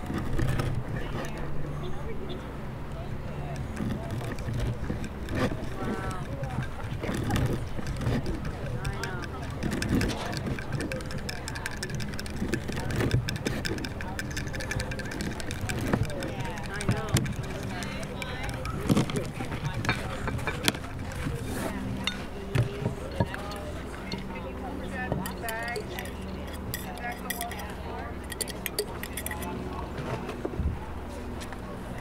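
Indistinct voices of people talking nearby. Among them are scattered sharp knocks and clinks from a knife cutting sourdough rye bread on a wooden board and a spoon stirring in a glass jar.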